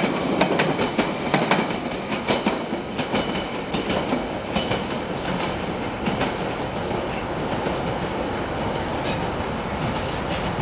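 London Underground Central line 1992-stock train pulling out of the station. Its wheels click over the rail joints quickly and often for the first few seconds, the clicks thinning as it draws away, over a steady rumble of the track.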